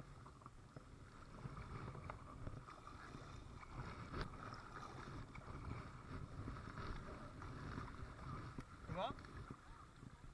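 Kayak paddling on calm river water: the double-bladed paddle dipping and pulling through the water, with drips and small splashes around the plastic hull. A low rumble of wind on the microphone runs underneath.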